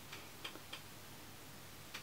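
A few faint, short ticks over quiet room tone.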